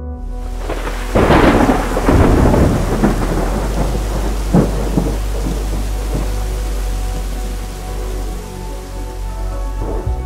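Thunder over steady rain: a loud crackling rumble about a second in, a couple of sharper cracks around the middle, then rain hissing on, over a low sustained musical drone.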